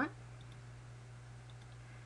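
A few faint computer mouse clicks, picking a colour from a drop-down palette, over a steady low electrical hum.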